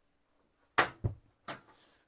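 The hinged cover and grate of a Suburban three-burner RV gas cooktop being handled: three sharp knocks a little under a second in, the first the loudest and the last the faintest.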